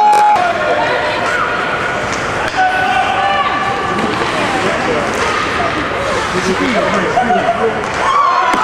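Many high voices shouting and calling over one another at a youth ice hockey game, with a few sharp clacks of sticks and puck on the ice.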